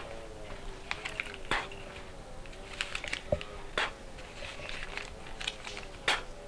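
Paper naira banknotes being handled and counted: scattered soft crinkles and flicks of paper, with a faint wavering hum in the background.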